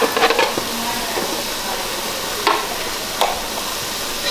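Spiced curry paste frying in an aluminium pot with a steady sizzle, while a metal spoon scrapes and clinks against the pot a few times: near the start, about halfway through and a little later.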